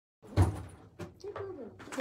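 A single thump about half a second in, then a few faint knocks and a short, soft low hum before a man starts talking.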